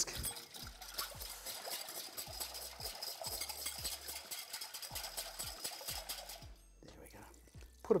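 Wire whisk beating a liquid dressing in a glass bowl: a quick, steady run of clinks and swishes that stops a little past halfway through.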